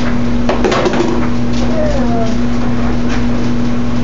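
Lid of a top-loading washing machine being lifted, a few knocks and clatters about half a second to a second in, over a steady low hum.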